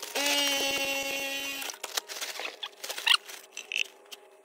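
A ratcheting PVC pipe cutter squeals steadily for about a second and a half as its blade shears through plastic drain pipe. Scattered light clicks and a few short squeaks follow.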